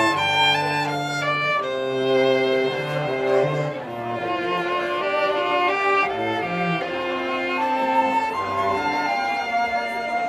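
A live trio of flute, violin and cello playing a classical piece, with the cello holding long low notes under the moving upper lines.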